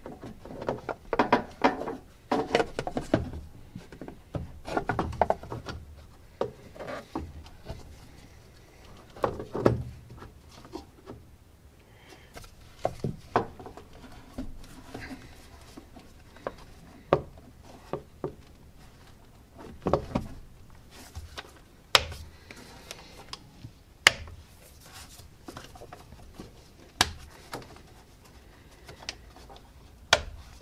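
Plastic engine air box and new air filter being handled and the lid refitted: scattered knocks and rubbing of plastic, busiest in the first few seconds, then a few sharp clicks in the second half as the lid's spring clips are snapped shut.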